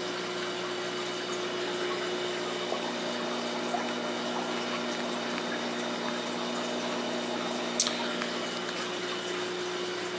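Steady hum and water noise of aquarium pumps and filters running in a fish room, with one brief click about eight seconds in.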